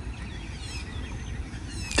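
Birds chirping in the background, a few short falling calls, over a steady low outdoor rumble.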